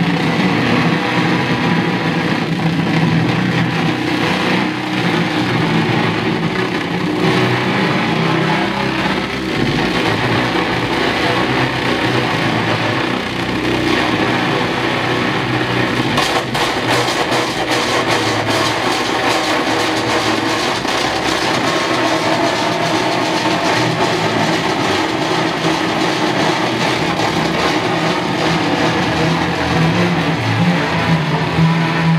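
Electric guitar played live through heavy distortion: a dense, unbroken wall of sustained, gritty tone. A few seconds past the middle, a fast crackling texture rides on top.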